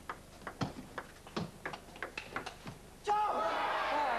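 Table tennis rally: the celluloid ball clicking off the bats and the table in quick succession, a few clicks a second. About three seconds in the rally ends with the point won, and a crowd in a large hall breaks into loud cheering.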